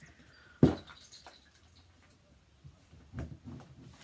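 A single sharp thump about half a second in as an object is put down, followed by faint rustling and handling noises while instruments are being moved.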